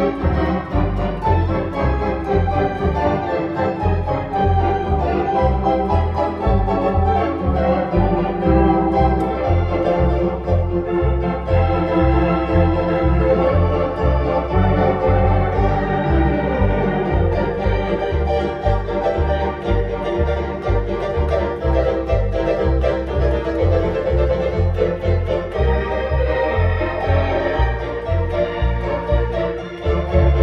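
Two-manual electronic home organ played with both hands: a continuous tune over held chords, with a steady pulsing bass line underneath.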